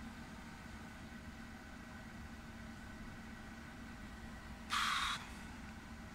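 Renault Magnum truck's diesel engine idling steadily, heard from inside the cab. A short hiss comes about five seconds in.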